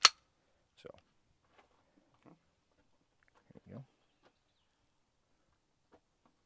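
A single sharp metallic click from a handgun being worked during dry-fire practice, followed by a few faint handling ticks and a brief low murmur about three and a half seconds in.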